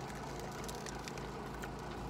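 Car's engine idling, a steady low hum heard from inside the cabin.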